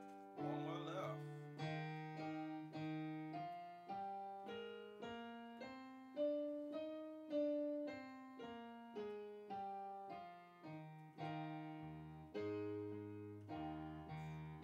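Yamaha Motif XS8 keyboard playing piano-sound chords, about two strikes a second. The chords step up in pitch through the middle and then back down, and a low bass note joins near the end.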